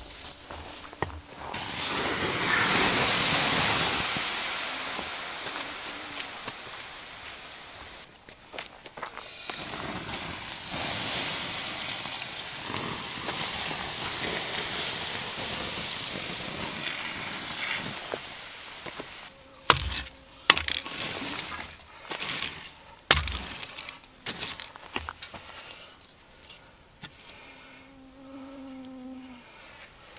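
Water poured onto the hot coals of a campfire, hissing and sizzling as steam rises, in two long pours that each swell and then fade. About two thirds of the way in come a few sharp knocks and clatters among the rocks and ashes.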